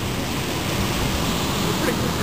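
Water blasting steadily from a fire hydrant knocked open by a car, a tall jet of spray making a constant rushing hiss.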